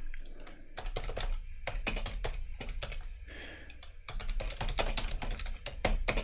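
Typing on a computer keyboard: a quick, irregular run of keystroke clicks as a command is entered at a terminal prompt.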